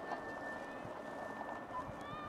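Outdoor playing-field ambience during a youth lacrosse game: steady background noise with faint distant shouts and a few soft thuds of footfalls. A constant thin high-pitched tone runs through it.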